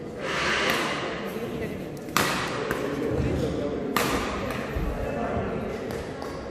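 Badminton rally: a racket strikes the shuttlecock twice, two sharp cracks about two seconds apart, with dull thuds of shoes on the wooden court between them. Crowd voices chatter throughout in a large hall.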